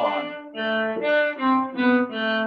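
Cello played with a string of short, separate bowed notes, about two a second, with a slide in pitch between notes at the start: shifting along the string.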